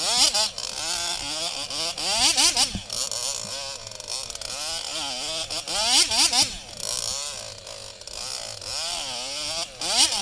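A 2000 Kawasaki KX80's two-stroke engine being ridden off-road, its pitch sweeping up and down over and over as the throttle is opened and closed. It revs hardest about two seconds in and again around six seconds.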